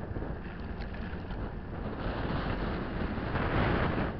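Steady rumble of road and wind noise from a moving vehicle, with wind buffeting the microphone; it grows louder about two seconds in and is loudest near the end.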